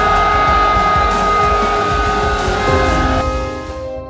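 Large crowd of men shouting and crying out together, with a long held note sounding over it. About three seconds in, it fades out under soft ambient keyboard music.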